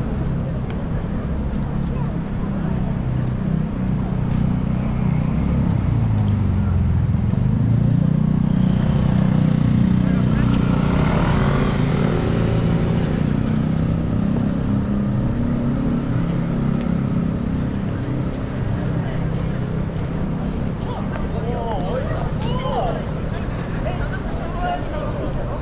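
Busy city street traffic: a steady low rumble of engines and tyres, swelling as a vehicle passes close by, loudest about ten seconds in, with passers-by talking.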